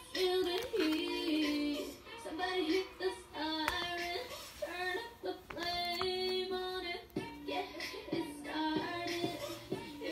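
Background music: a song with a high sung voice carrying the melody throughout.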